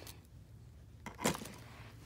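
Hands handling stretchy plastic fidget toys (monkey noodles and mesh tubes): low handling noise, with one short louder sound about a second in.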